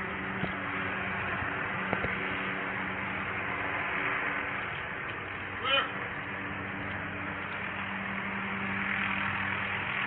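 A steady mechanical hum running over a haze of noise, with a brief distant call about halfway through and a couple of light clicks.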